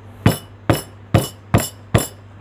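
A stone pestle pounding a piece of fresh ginger flat (geprek) on a wooden cutting board: five even, sharp knocks, a little over two a second.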